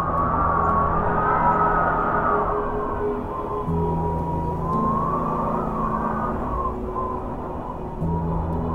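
Wind blowing with a whistling tone that slowly rises and falls, over ambient music of held low notes that drop out just after three seconds in and come back soon after.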